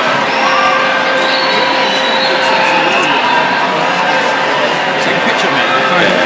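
A large open-air concert crowd cheering and shouting, with a few steady held notes from the stage sound running beneath it.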